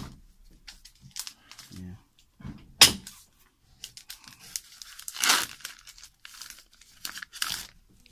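Packaging crinkling and being torn in a few short bursts, the loudest a sharp rip about three seconds in and a longer rustle a couple of seconds later.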